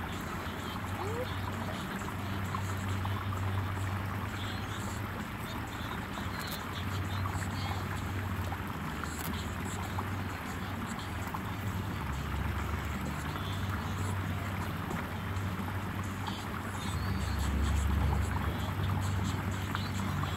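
Wind buffeting the microphone outdoors: a steady low rumble that swells and eases, loudest near the end.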